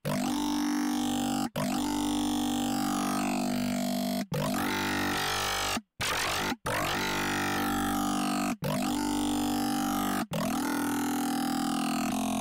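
Distorted synthesizer notes from Bitwig's Polymer, run through the Bitwig Amp with its cabinet modulated, giving a gritty, FM-like tone. The same low note is held and retriggered about six times, each lasting one and a half to two and a half seconds with a short break between.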